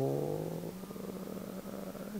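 A man's voice holding one long hesitation sound, a steady low hum like a drawn-out "ehh" between words, slowly fading.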